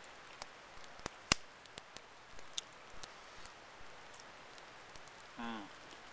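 Light drizzle and a small campfire: a soft hiss with scattered sharp ticks and pops, the loudest a little over a second in.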